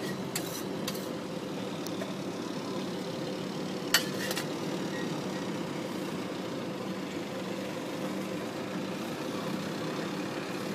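A steady motor hum throughout, with a few light taps in the first two seconds and a sharp knock, followed at once by a second, about four seconds in, as roti dough is worked by hand on a steel counter.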